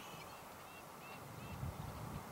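Faint bird calls, a few short chirps about half a second apart, over a low, uneven outdoor rumble.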